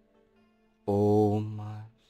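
A man's calm voice saying one slow, drawn-out word, "almost", starting about a second in, over a faint bed of steady binaural-beat tones.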